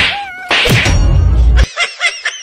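A man crying out in a high, wavering wail while being beaten, in a staged beating. About half a second in comes a loud, rough burst with a heavy low rumble, which cuts off suddenly at about one and a half seconds. A fast run of short, chirpy sounds starts just after.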